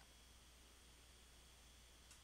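Near silence: faint hiss and low hum of a microphone between phrases of speech.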